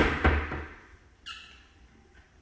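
Painted wooden cabinet doors knocking and banging, two sharp knocks in quick succession at the start, then a short squeak about a second later.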